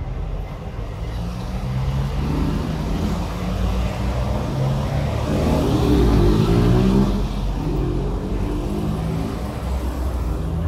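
A road vehicle's engine passing by, growing louder to its peak a little past the middle and then fading.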